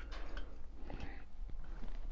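Faint, scattered small clicks and taps of a clutch cable being handled and threaded through the clutch arm of a two-stroke bicycle engine kit, over a low steady hum.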